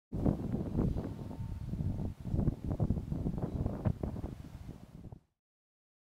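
Wind buffeting the microphone outdoors, a gusty low rumble that rises and falls, then cuts off suddenly about five seconds in.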